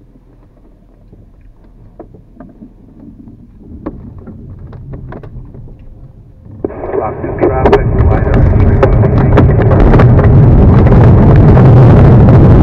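LS4 glider starting its takeoff roll across a grass field: quiet light clicks in the cockpit, then from about six and a half seconds in a loud rumble and rattle of the wheel and airframe over the grass, growing louder with rushing air as speed builds.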